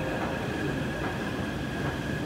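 Taipei MRT metro train on an underground station platform: a steady rumble with a thin, steady high whine over it.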